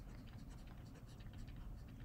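Faint scratching and light ticks of a stylus writing on a tablet surface.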